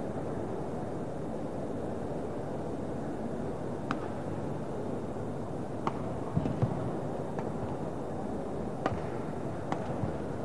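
Badminton rackets striking a shuttlecock during a rally: about half a dozen sharp hits, one to two seconds apart, starting about four seconds in, over the steady hum of an arena crowd.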